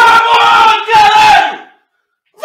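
A man screaming in celebration of a goal: two long, very loud held yells, one straight after the other.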